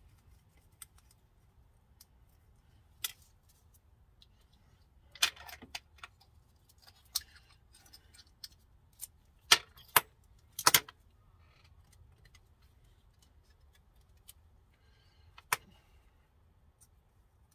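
Scattered small clicks and clinks of paint bottles, a stirrer and a metal can of lacquer thinner being handled on a workbench, with the sharpest few taps coming close together about ten seconds in.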